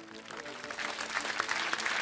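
Audience applauding, the clapping growing steadily louder, with faint music underneath at first.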